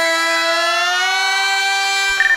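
A voice holding one long sung note at a steady pitch that creeps slightly upward.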